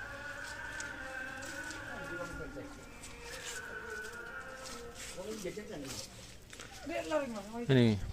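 Faint voices of people talking in the background, with a low steady background hum.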